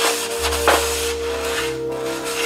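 Background music with a held note and a bass line that changes in steps. Underneath, a Scotch-Brite pad scrubs faintly over the textured plastic of a dash panel.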